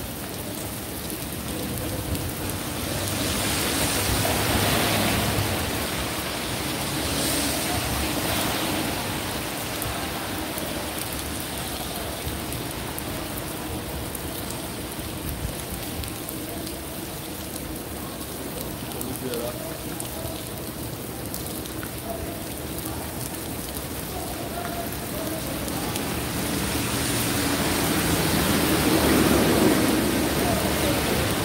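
Steady rain falling on a wet city street, an even hiss of drops on pavement. It swells louder about four seconds in and again near the end as cars pass, their tyres hissing through the wet road.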